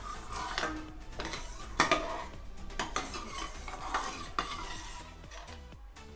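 Steel ladle stirring hot sugar syrup in a stainless-steel kadhai, scraping and clinking against the pan about once a second.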